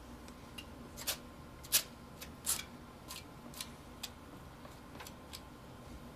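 Paintbrush strokes on canvas: short, irregular scratchy swipes, about eight of them, with gaps of a fraction of a second to a second between them.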